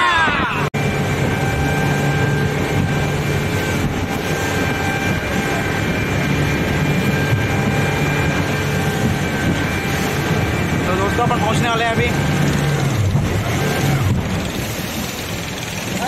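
Speedboat outboard motor running steadily at speed, a constant drone mixed with rushing wind and water. A voice calls out briefly about eleven seconds in.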